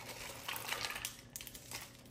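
Milk poured from a plastic cup into a glass for an iced mocha, with a soft pour and a scatter of light clicks and clinks throughout.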